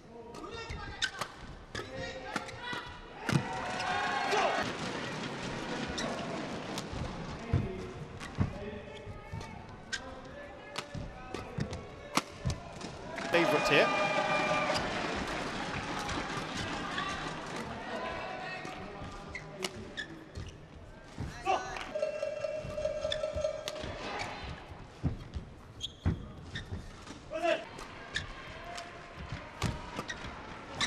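Badminton rallies: repeated sharp racket strikes on the shuttlecock and shoe sounds on the court. Between points, voices shout and cheer in the hall.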